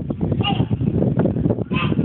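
A young child's short, high-pitched vocal squeals, once about half a second in and again near the end, over a steady low rumble.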